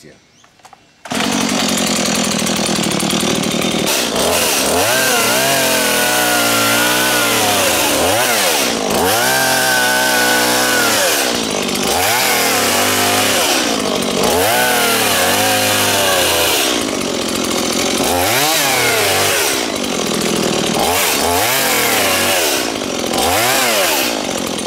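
Stihl chainsaw coming in suddenly about a second in, then running loud and revving up and down over and over as it cuts the fronds off a cycad.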